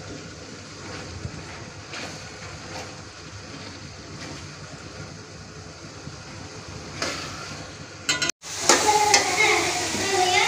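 Chopped tomatoes and peas sizzling in an aluminium pot while a slotted metal spatula stirs them, scraping the pot now and then. The sound breaks off briefly about eight seconds in, then comes back louder.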